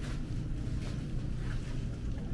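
Steady low hum and rumble of a supermarket's background machinery, with the walker's footsteps falling about every two-thirds of a second.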